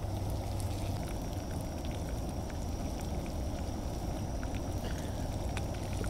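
Breaded catfish chunks frying in oil in a skillet on a propane camp stove: a steady sizzle with scattered small pops and crackles.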